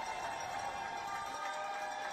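Music with long held notes, changing to a lower note about a second and a half in, played without speech over it.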